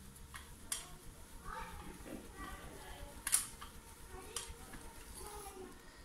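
Faint, indistinct speech with a few sharp clicks, the loudest about three seconds in.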